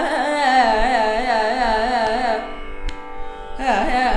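Female Carnatic vocalist singing a held 'aa' vowel with rapid oscillating gamakas over a steady drone. The voice breaks off for about a second past the halfway point, leaving only the drone, then comes back in with a downward slide.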